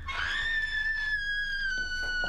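A boy's long, high-pitched scream from a film soundtrack, held on one note that sinks slightly in pitch.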